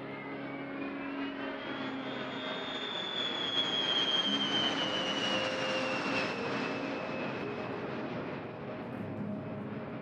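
White Knight Two carrier aircraft flying overhead on its four turbofan engines. A jet whine rises in pitch over the first few seconds, then slowly falls as it passes, with the engine rush loudest around four to six seconds in.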